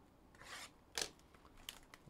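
Faint handling of a cardboard trading-card box: a short rasping scrape of cardboard rubbing about half a second in, then a sharp click about a second in, with a few small ticks after.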